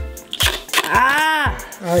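A person's drawn-out wordless "ooh", rising and then falling in pitch and about a second long, over background music.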